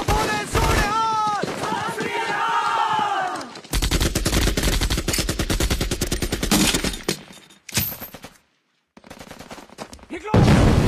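Film battle-scene gunfire: men shouting over shots, then a long rapid burst of machine-gun fire that breaks off about eight seconds in, followed by a moment of silence.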